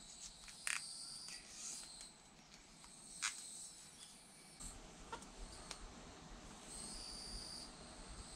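Faint, high insect chirping in short spells of a second or two, with a few sharp small clicks and rustles from hands working wire and tape.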